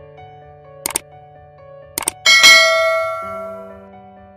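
Outro music with two sharp mouse-click sound effects, about one and two seconds in, followed by a bright bell ding that rings out and fades over about a second: the stock sounds of an animated subscribe button and notification bell.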